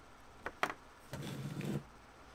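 Two sharp clicks about a fifth of a second apart from the keypad of a RigExpert AA-170 antenna analyzer being pressed, followed by a brief low hum.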